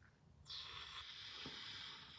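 Aerosol hair-glue spray hissing steadily for nearly two seconds, starting about half a second in, as the valve of a can with a broken nozzle is held down with another object.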